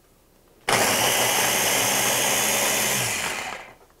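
Food processor with a top-mounted motor head switched on about a second in, running steadily as its blade chops seeded jalapeños fine, then winding down and stopping near the end.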